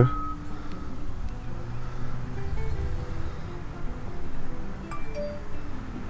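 Background music: a melody of short, separate notes at changing pitches over a low rumble.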